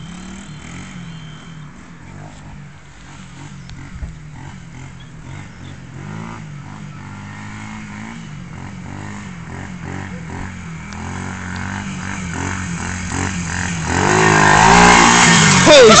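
Small 110 cc motorbike engine being ridden around, its pitch rising and falling with the throttle. It is fairly faint at first, grows louder over the last several seconds as the bike comes toward the microphone, and is loudest as it passes very close near the end.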